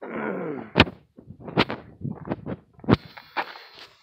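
A car door being handled and opened on a Mercury Grand Marquis: a few sharp clicks and knocks from the handle, latch and door, the loudest about a second in.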